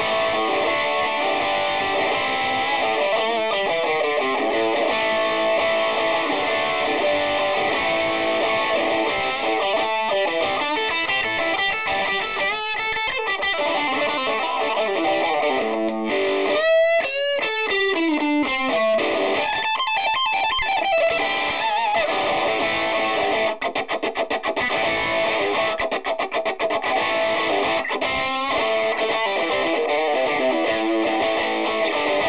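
Electric guitar played through a Marshall MS4 mini double-stack amp with gain, volume and tone all on 10, giving its full distortion sound. Held, distorted chords alternate with quick runs of notes.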